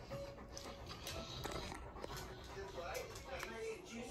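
A dog panting and whining softly, with faint, wavering high whimpers that come and go.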